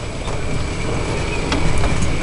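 Riding in a moving open-sided electric car: a low rumble of wind buffeting and tyres on the paved path, with a faint steady high whine.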